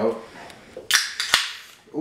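An aluminium Rockstar energy drink can being opened by its pull tab: a short fizzing hiss of escaping gas about a second in, then a sharp click.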